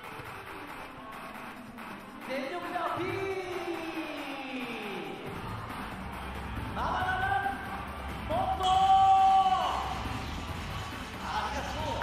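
Music in a sports hall with long, drawn-out voice calls sliding in pitch, three of them, the last and loudest about nine seconds in.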